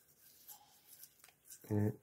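A quiet stretch with a few faint scratchy ticks, then a man's voice starts speaking near the end.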